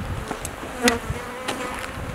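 Honeybees buzzing around their hives, a thin steady hum. A few sharp clicks cut in, the loudest about a second in, over a low rumble.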